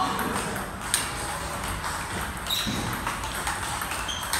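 Table tennis rally: the plastic ball clicking sharply off the paddles and the table, a few hits about a second apart.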